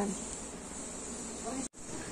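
Steady, even background hiss of room noise, cut by a brief silent dropout near the end where the recording is spliced.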